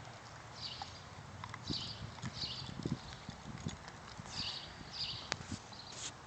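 A dog gnawing on a wooden stick: irregular cracks and crunches as its teeth bite into the wood, with short scratchy scraping sounds in between.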